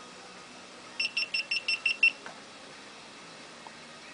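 GoPro camera's built-in beeper sounding its power-off signal: seven short, high, evenly spaced beeps over about a second, as the camera shuts down.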